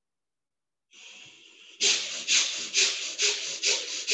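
About a second in, a long hissing breath through the nose begins. From about two seconds in, rapid forceful breaths follow, about two sharp hissing puffs a second: pranayama breathing of the rapid, forceful kind.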